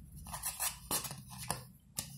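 Hands handling a polystyrene foam cup and a marker pen: light rubbing with a few sharp clicks, the clearest about a second and a second and a half in.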